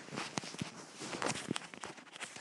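A quick, irregular run of light knocks and clicks with rustling close to the microphone, like handling noise.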